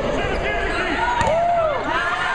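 Indoor volleyball rally: players' shoes squeaking on the hardwood court, a sharp hit of the ball about a second in, and a laugh at the start over players' voices.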